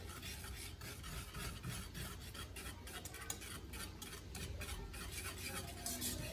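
Wire whisk stirring a hot liquid gelatin mixture in a metal saucepan, mixing in sugar: the wires scrape and tap against the pan in many quick, uneven strokes.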